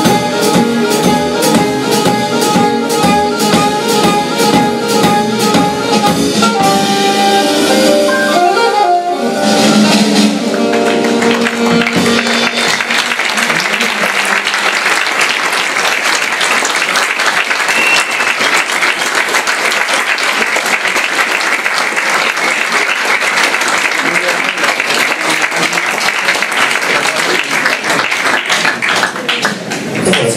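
A jazz quintet of saxophone, piano, archtop guitar, double bass and drum kit plays the closing bars of a tune, ending on a falling run about nine seconds in. Audience applause follows and lasts to the end.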